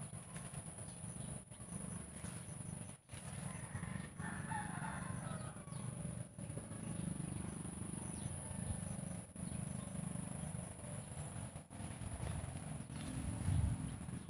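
A rooster crows once, about four seconds in, over steady low rustling and handling noise from walking through grass and vines with the camera.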